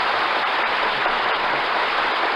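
Studio audience applauding in a steady, even round of clapping, heard on an old, narrow-band radio transcription recording.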